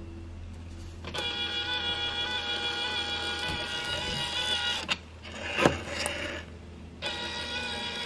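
Brother P-touch label printer printing a tape label: a steady motor whine for about four seconds, a couple of sharp clicks around five to six seconds in, then the whine again near the end.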